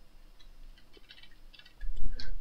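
Faint computer keyboard keystrokes, a short scatter of light clicks as text is typed and edited.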